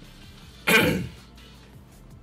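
A man clears his throat once, a short loud burst just under a second in, over quieter background music.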